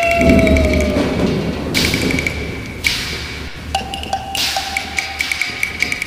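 Cantonese opera percussion: a low stroke at the start, then crashes about every second or so over a quick, regular clacking of woodblock. This is the percussion cue (撞點) that brings in a fast er-liu (快二流) passage.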